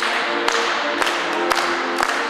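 Accordion playing a dance tune, with hand claps on the beat about twice a second.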